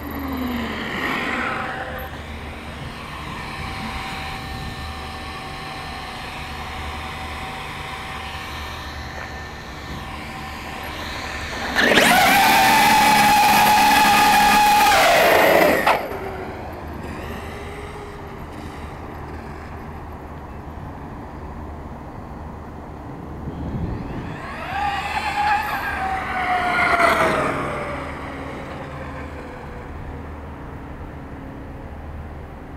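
Traxxas X-Maxx 8S electric RC monster truck's brushless motor and drivetrain whining as it drives on asphalt: a short whine about a second in, a loud high whine held at a steady pitch for about four seconds midway, and a whine that rises and then falls near the end.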